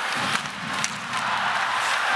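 Ice hockey arena sound: steady crowd noise from the stands, with a few sharp clacks of sticks and puck on the ice.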